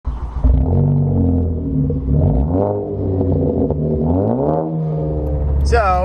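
A car engine revving up and down, its pitch stepping and rising in several sweeps. Near the end it gives way to a steady low drone from inside a moving car, as a man starts to talk.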